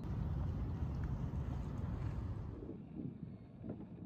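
Wind rumbling on a small action-camera microphone over open water, a steady low noise that eases off about three seconds in.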